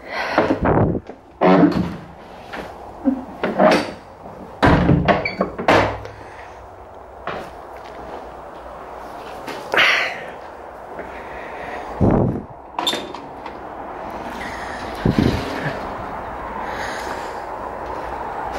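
Heavy wooden church door being opened and shut with its iron latch, a series of knocks and clunks. They come thick over the first six seconds, then singly about ten, twelve and fifteen seconds in.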